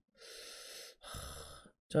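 A man breathing close to the microphone: two breaths of under a second each, the second with a low puff against the mic.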